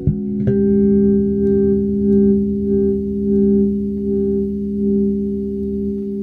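Spector Euro 4 LX electric bass with EMG pickups, played through an LHZ preamp. A chord is plucked at the start, with higher notes added about half a second in, and left ringing for several seconds with a slow rise and fall in level.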